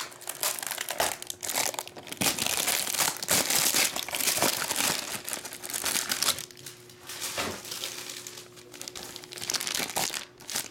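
Plastic wrap and a foil card pack crinkling and tearing as they are pulled open by hand, an irregular crackle that is busiest in the first half and thins out towards the end with a few sharper crinkles.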